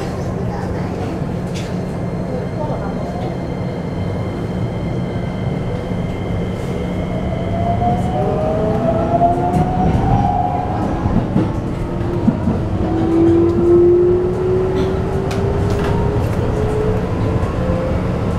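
Keikyu New 1000 series train with Toyo IGBT-VVVF inverter pulling away, heard from inside the car: over the steady rumble of the running train, the inverter's whine sets in about seven seconds in and climbs steadily in pitch as the train gathers speed.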